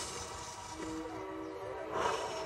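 Ambient background music of steady, held tones, with soft breathing noise under it and a short breath out near the end.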